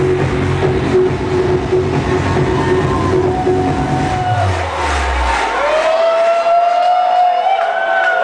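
Electronic trance track playing loud through a club sound system. About five seconds in, the kick and bass drop out with a falling low sweep, leaving sustained melody lines that bend and glide in pitch as the track moves into a breakdown.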